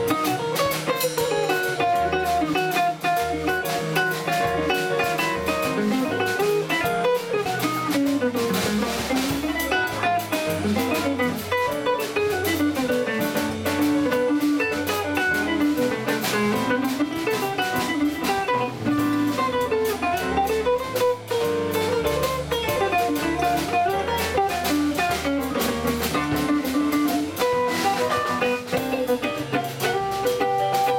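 Live jazz quartet playing: hollow-body electric guitar, upright double bass, drum kit with cymbals ticking steadily, and a digital stage piano. Quick rising and falling melodic runs sit over a stepping bass line.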